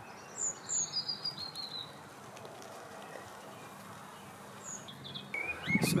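Small birds chirping: a quick run of short, high chirps in the first two seconds, and another brief chirp or two near the end, over a steady outdoor hiss.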